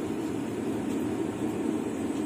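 Steady, even mechanical whir of an egg incubator running, its chain-driven turner tilting the egg trays smoothly with no clicks or knocks.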